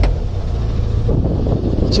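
Narrowboat engine running with a low rumble, with wind buffeting the microphone.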